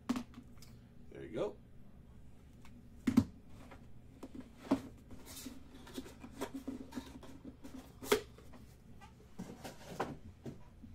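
Clear plastic card holders and a small cardboard card box being handled and set down on a table: a string of sharp clacks and knocks, the loudest about three seconds in and again about eight seconds in.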